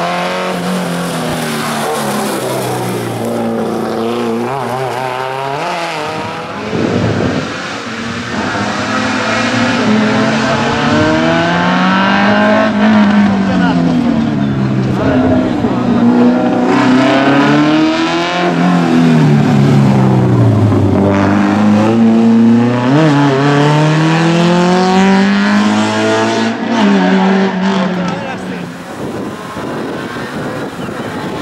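Alfa Romeo saloon race car's engine revving hard and lifting off over and over as it weaves through a slalom of cones, its pitch climbing and dropping with each burst of throttle. The engine gets somewhat quieter near the end.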